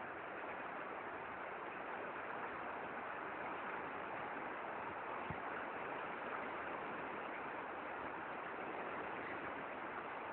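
Steady rushing of water through the lock paddles as the lock empties, an even hiss with no pitch to it. A single sharp click about five seconds in.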